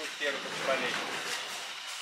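Quiet, indistinct speech over a steady background hum of store noise.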